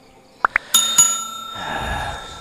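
Subscribe-button animation sound effect: two quick blips like clicks, then a bell struck twice in quick succession that keeps ringing. A low whoosh comes in near the end.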